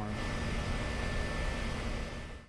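Steady rushing noise with a faint, steady high hum running through it.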